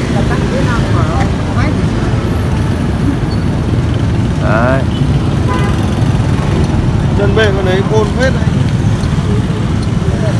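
Steady low rumble of passing street traffic, with brief snatches of other people's voices about four and a half seconds in and again near the end.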